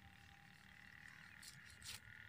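Faint, steady calling of frogs from the flooded field. Near the end there is a short soft cutting sound as a sickle cuts through mustard greens.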